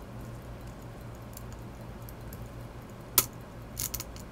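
Steady low hum with one sharp click about three seconds in and two fainter clicks just before the end: a small watchmaker's screwdriver touching the plate and screws of a Waltham pocket watch movement.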